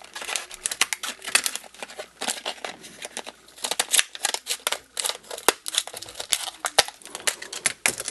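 Scissors cutting open a stiff plastic blister pack: many irregular snips, crackles and crinkles of the plastic and card.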